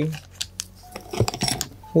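A few light clicks and knocks of a plastic blush compact being handled and opened, with a duller knock about a second and a half in.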